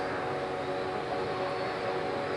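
A steady drone of several held tones, unchanging throughout, under a faint hiss.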